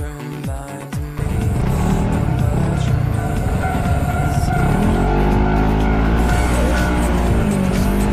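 Dance music with a beat for about the first second. Then the Yamaha Majesty S scooter's single-cylinder engine pulls away and accelerates, its pitch climbing in the second half, under heavy wind rumble on the microphone.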